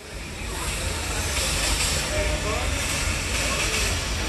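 Small steam locomotive standing still, letting off a steady hiss of steam, with faint voices in the background.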